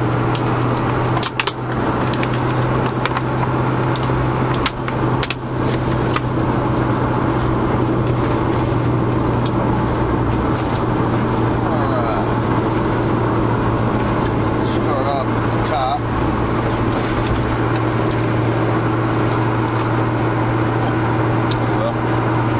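Steady low drone of a car's engine and road noise inside the cabin. Over it, a few sharp clicks and cracks of a stiff plastic clamshell package being cut and pried open come in the first several seconds, then soft plastic-wrapper handling.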